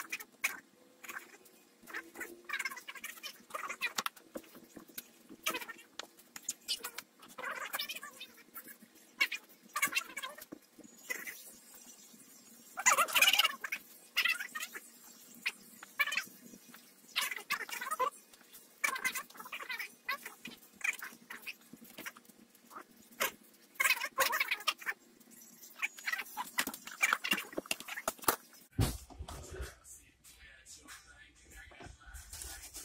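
Chef's knife slicing through smoked corned beef brisket on a wooden cutting board: irregular short sawing strokes and knocks of the blade against the board.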